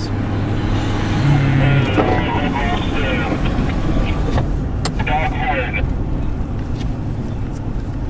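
A car driving, heard from inside the cabin: a steady low hum of engine and road noise, with faint talk underneath and a couple of light clicks about halfway through.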